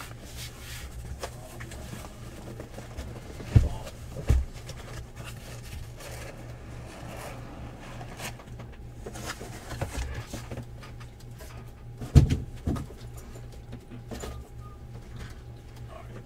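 Cardboard hobby boxes being pulled out of a cardboard shipping case and set down on a table: cardboard sliding and rustling, with two pairs of dull thumps as boxes land, one about three and a half seconds in and one about twelve seconds in, over a low steady hum.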